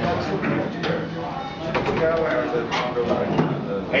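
Indistinct chatter of spectators by the court, voices overlapping, with a few sharp knocks.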